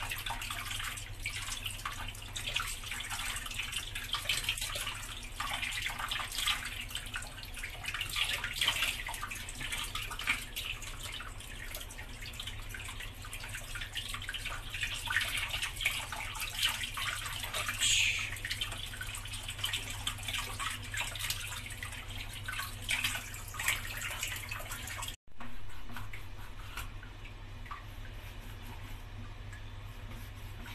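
Kitchen tap running onto a fish as it is rinsed and turned by hand in a stainless steel sink, water splattering off the fish. The running water cuts off suddenly near the end, leaving a quieter hiss.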